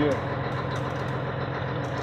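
Truck engine running steadily, heard from inside the cab while the truck moves slowly.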